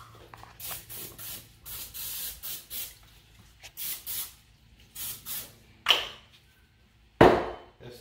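Pam cooking spray hissing from an aerosol can in a series of short spritzes as the sides of a springform pan are coated. Then a knock just before six seconds and a louder clunk a little after seven seconds.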